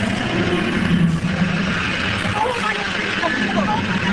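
Studio tour tram running, a steady low engine hum over road noise.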